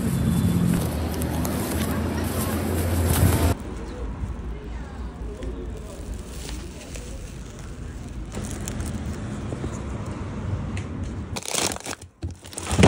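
Street noise with a steady low traffic hum. After a sudden cut comes the softer rustle and crinkle of a foil-lined insulated bag being handled. Near the end there is a short loud clatter.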